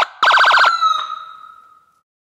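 Siren-like electronic warble: a rapid pulsing tone, six or seven quick pulses in about half a second, ends in a single held tone that fades away over about a second.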